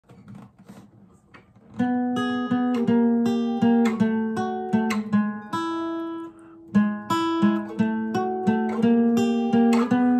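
Acoustic guitar playing a blues turnaround lick: a run of picked notes that begins about two seconds in, with a short gap just past halfway.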